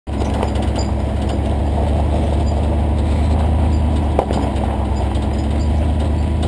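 Jeep Honcho pickup's engine running with a steady low drone as the truck climbs a steep, loose-rock trail, with body and gravel rattles and a single sharper knock about four seconds in.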